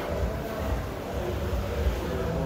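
Low, uneven rumble of handling noise from a handheld camera being carried, over faint general noise.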